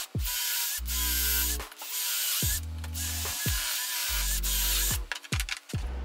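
Cordless drill driving fine-thread pocket screws into walnut hardwood, in about four runs of a second or so each with short pauses between, over background music.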